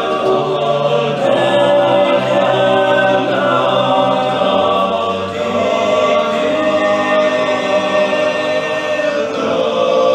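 All-male a cappella ensemble singing close-harmony held chords over a low bass line, with the chords shifting every few seconds.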